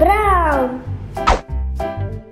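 Bouncy children's background music with a steady bass pattern, and right at the start a single cartoonish voice-like call that rises, then slides down in pitch over about half a second. A short swishing sound effect follows about a second later.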